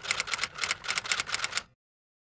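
Typing sound effect: a quick run of key clicks as text is typed out, stopping shortly before the end.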